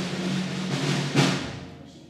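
Live rock band's instruments ringing between songs: a held low guitar tone, then a single drum-and-cymbal hit a little over a second in that rings out and fades away.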